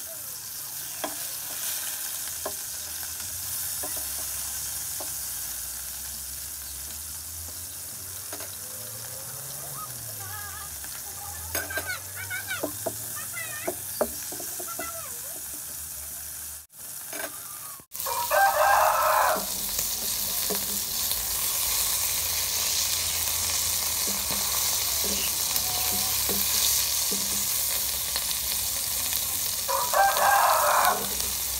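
Snake pieces frying in shallow oil in a nonstick wok: a steady sizzle, with a few clicks of metal tongs against the pan as they are turned. The sizzle drops out for a moment a little past halfway, then comes back louder, and a rooster crows once just after.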